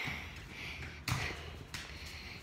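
Soft thumps of bare feet on a floor as a child runs and hops, with one thump about a second in.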